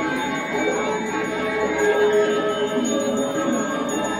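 Balinese gamelan playing dance music, its bronze metallophones ringing in sustained, overlapping tones at a steady level.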